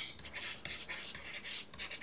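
A stylus scratching across a drawing tablet in quick, irregular strokes as words are handwritten.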